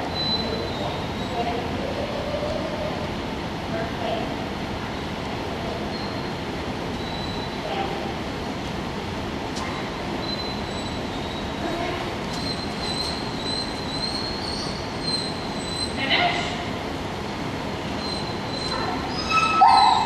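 Steady rushing background noise of a large indoor hall, with faint distant voices and a thin high whine that comes and goes. A voice speaks sharply right at the end.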